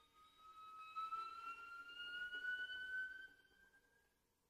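Solo violin holding a soft, high note that glides slowly upward, fading away near the end.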